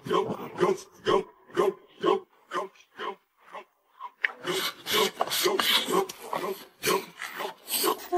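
Close-miked chewing of a mouthful of chicken drumstick, wet and rhythmic at about two chews a second. After a short pause about three seconds in, chili-sauced rice is scooped in with chopsticks and chewed, with denser, noisier mouth sounds.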